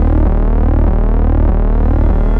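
Synthesized logo-intro sound design: a loud, steady low drone under a dense wash of tones sweeping up and down.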